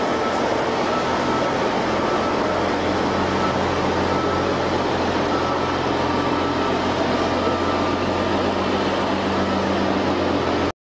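Diesel tractor-trailer engine running at a steady speed: a constant low hum under a wash of steady noise.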